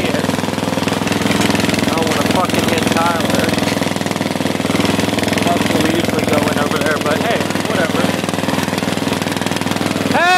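Riding lawn mower engine running hard and steadily, with a rapid firing beat, as the mower is ridden up a hill; a second mower's engine runs close by.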